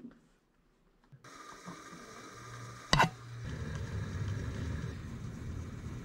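A benchtop milling machine switched on with a loud click about halfway through, then its motor running with a steady low hum.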